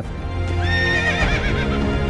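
A horse whinnies once, a high quavering call that falls away about a second and a half in, over music that starts at the beginning.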